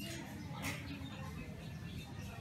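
Short high chirps from small birds, scattered and repeated, over a low steady background rumble, with a brief rustle about two-thirds of a second in.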